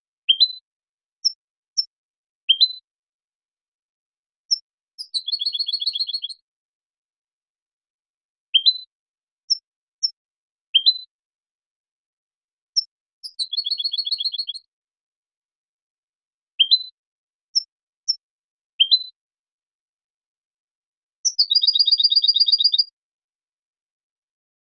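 European goldfinch (Carduelis carduelis) song. The same phrase comes three times, about every eight seconds: a few short, high rising chirps, then a rapid trill lasting about a second and a half. There is no background noise between the notes.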